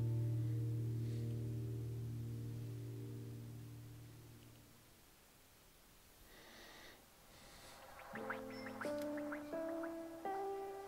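Quiet background piano music: a held chord slowly fades out over the first half, and after a short pause new chords are struck in quick succession near the end.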